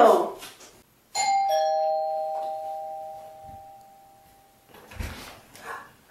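Two-tone doorbell chime: a high note, then a lower note, both ringing on and fading slowly over about three seconds. A short soft thump follows near the end.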